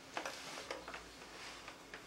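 Quiet room tone with a few short, faint clicks.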